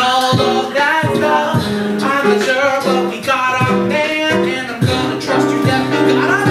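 A man singing a song over live instrumental accompaniment, with steady held bass notes under the melody.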